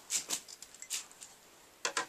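Scissors snipping through a paper tea bag, a few short crisp cuts in the first second or so, then a sharper clack near the end as the scissors are set down on a plastic crate.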